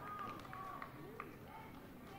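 Faint sports-hall ambience: distant voices from other badminton courts, with a few light clicks.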